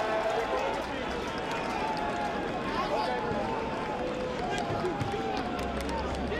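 Voices shouting and calling across an open football ground, drawn out and overlapping, over a steady bed of crowd and outdoor noise.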